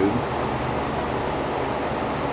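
Steady background hiss and hum, even throughout with no distinct event.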